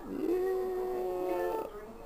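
A person's voice holding one long, steady note for about a second and a half, then stopping.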